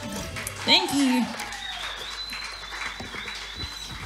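A brief whooping voice about a second in, pitch bending up and down, followed by faint applause and a thin, steady high tone.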